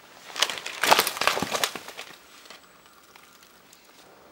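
A burst of crunching and cracking as a mountain bike goes onto a stack of snow-covered wooden poles. It is loudest about a second in and fades out after about two seconds.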